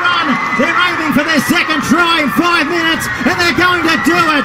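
Excited male sports commentary: a raised, high-pitched voice talking without pause.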